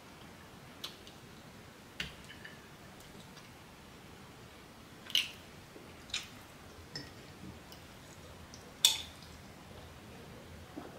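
Close-up mukbang eating sounds: a handful of short, wet mouth clicks and smacks while rice is eaten by hand, about six in ten seconds, the loudest near the end.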